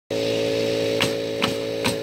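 A steady low machine hum, with three short sharp knocks about half a second apart in the second half.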